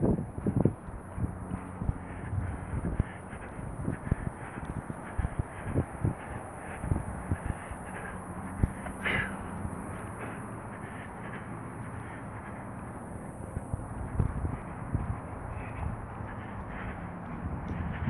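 Metal shopping cart pushed along a concrete sidewalk, its wheels and wire basket rattling and knocking irregularly over a steady background noise. A short rising call is heard about nine seconds in.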